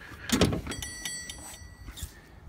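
Zero-turn mower seat tipping forward on its hinge: a knock, then a steady high squeak lasting about a second.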